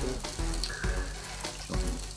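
Marbled beef ribeye sizzling steadily on a tabletop barbecue grill.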